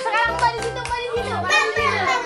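Young children laughing and calling out excitedly over background music with a steady beat.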